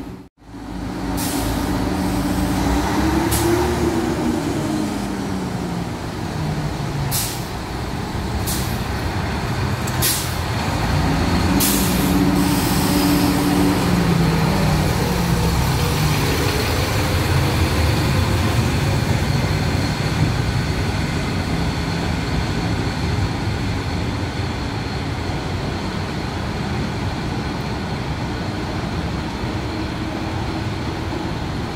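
Diesel railcar engine running, revving up and dropping back twice as it pulls away. Several short hisses of released air from the brakes come in the first dozen seconds, then a steady engine and running noise.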